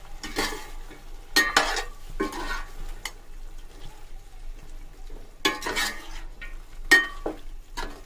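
A metal spoon stirring chicken, tomatoes and yogurt in a stainless steel pot, in a run of short scrapes and clinks against the pot, with a lull in the middle.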